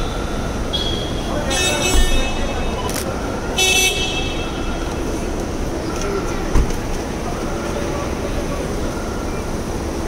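Car horns honking in three short blasts over traffic noise and voices, with a heavy thud about two seconds in and another past the middle, the sound of an SUV door being shut.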